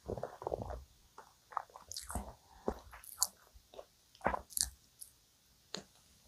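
Close-miked mouth sounds of someone chewing a mouthful of soft donut washed down with milk: a series of irregular wet clicks and smacks.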